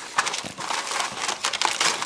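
Aluminium foil covering a sheet pan crinkling and crackling as it is gripped and peeled back.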